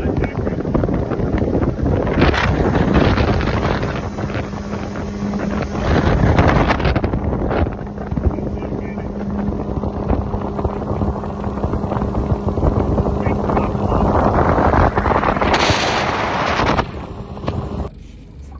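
Wind buffeting the microphone over the steady low hum of a fishing boat's outboard motor running. The wind noise drops away near the end.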